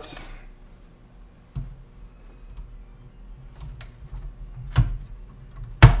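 A circuit board being handled and lowered into a vintage computer's metal card cage: a few short clicks and knocks as it meets the plastic card guides and chassis, the loudest two near the end.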